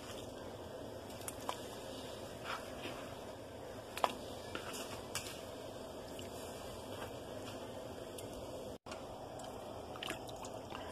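Raw chicken gizzards being dropped and pushed by hand into a pot of seasoned water: faint wet squishes and a few small, sharp clicks over a steady background hiss.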